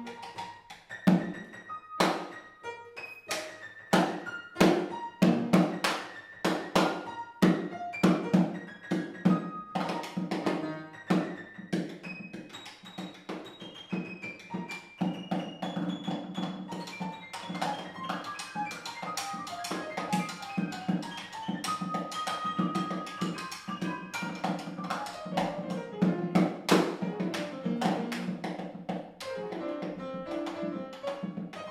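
Piano and drum duo: an upright piano played in quick runs and clustered notes, with dense, sharp stick strikes on a snare drum damped by a cloth laid over its head. The strikes are thickest in the first half; the piano lines come forward later.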